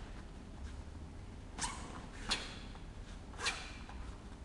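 A taekwon-do student performing techniques: three short, sharp swishes within about two seconds.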